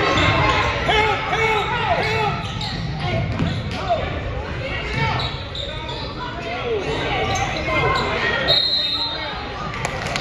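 Basketball bouncing on a hardwood gym floor during play, with players and spectators calling out over it, the sounds carrying in the large gym.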